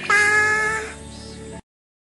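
A short, high cat meow over background music. The sound cuts off abruptly to silence about a second and a half in.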